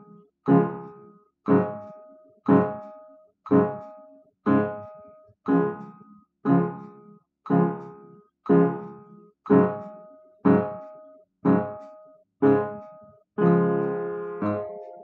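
Piano playing the teacher's duet accompaniment in D-flat major: a chord struck once a second at a steady 60 beats a minute, each left to die away before the next. Near the end a fuller chord is struck and held longer.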